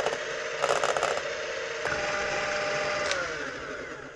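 Electric hand mixer whirring as its beaters whip egg whites toward stiff peaks in an enamel bowl, with a brief clatter about a second in. Its pitch shifts about two seconds in, then falls near the end as the motor winds down.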